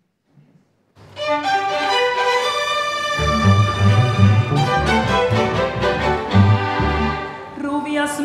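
Small string orchestra of violins, cellos and double bass playing an instrumental introduction, starting about a second in; low cello and bass notes join about three seconds in.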